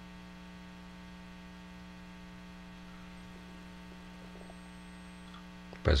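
Steady electrical mains hum: a low, even buzz that holds unchanged throughout.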